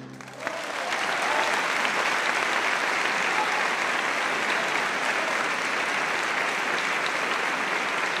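Audience applauding, breaking out about half a second in as the last orchestral chord dies away, then holding steady.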